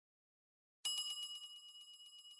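A bell sound effect for the subscribe animation's notification bell: a bright ring with a fast trill in it that starts about a second in and fades.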